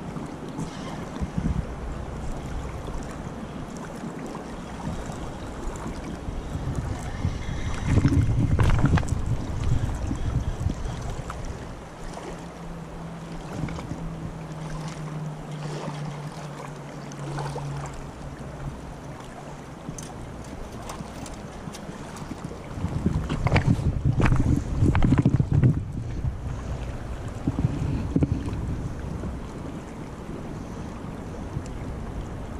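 Wind buffeting the microphone over the steady rush of a flowing river, with strong gusts about 8 seconds in and again from about 23 to 26 seconds. A low steady hum sounds for several seconds in the middle.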